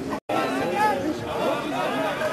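Several voices talking and calling out at once, overlapping chatter, with a brief complete dropout of the sound a quarter-second in.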